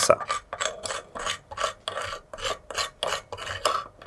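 Metal spoon scraping a crust of dried salt crystals out of a ceramic evaporating dish, in quick repeated scratchy strokes, about four a second. This is the salt left behind once all the water has evaporated from the salt solution.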